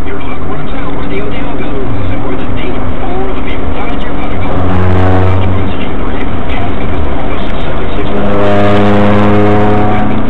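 Heavy vehicle noise mixed with people's voices. A steady pitched drone comes in twice: briefly about five seconds in, and for about two seconds near the end.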